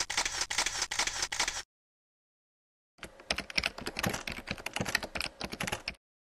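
Rapid, irregular clicking and clattering in two bursts: a short one of about a second and a half, then dead silence, then a longer one of about three seconds.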